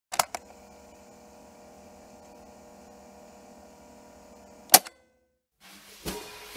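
Two sharp clicks, then a faint steady electrical hum with a few held tones, cut off by another click just before a brief silence.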